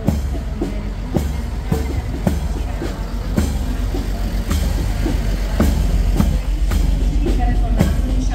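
Military march music with a steady drum beat about twice a second, over the low engine rumble of a heavy six-wheeled army truck driving past close by, growing a little louder midway.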